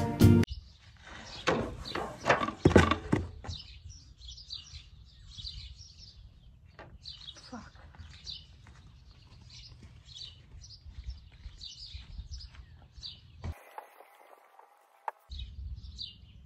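Small wild birds chirping repeatedly in short high calls. In the first few seconds there are several dull thumps as bread dough is handled on a wooden board.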